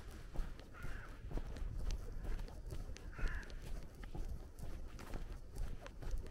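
Footsteps on a paved lane, with a crow cawing twice, about a second in and again just past three seconds.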